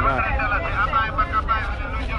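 Voices talking close by, in higher-pitched speech that goes unbroken through the two seconds, over a steady low rumble of street traffic.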